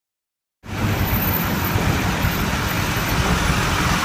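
An engine running steadily with a low rumble, starting out of silence about half a second in.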